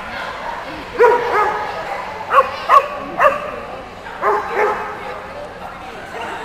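A dog barking: about seven sharp, loud barks, mostly in pairs, over a few seconds, with a steady hum of the hall behind.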